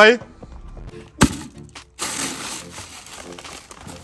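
A fist punching through the paper cover stretched over a plastic bucket, one sharp pop about a second in, followed by steady crinkling of paper and a plastic snack packet as it is rummaged for and pulled out.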